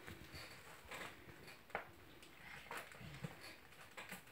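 Near silence: quiet room tone with a few faint, brief clicks and taps of handling.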